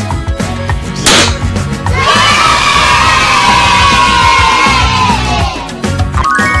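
A sharp pop about a second in, then a crowd of children cheering and shouting for about four seconds, fading near the end, over background music.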